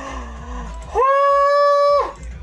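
A man's low wavering groan, then a loud high-pitched squeal that scoops up, is held steady for about a second and cuts off sharply: an excited vocal reaction.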